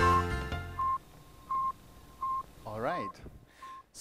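Intro music fades out about a second in. It is followed by a series of short electronic beeps, all at one high pitch, about every two-thirds of a second, with a brief voice-like sound near the end.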